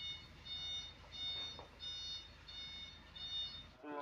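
Electronic warning beeper sounding a high beep just under twice a second, over a steady low engine rumble: a truck's reversing alarm with its diesel engine running.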